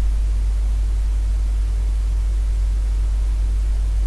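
Steady low hum with an even hiss underneath, unchanging throughout and with no crunch or movement sounds; it is the recording's constant background noise.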